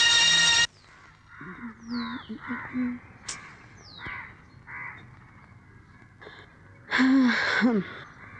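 Film music cuts off, then crows caw several times in a quick series, with a few short falling bird whistles in between. A louder, drawn-out call with falling pitch comes near the end.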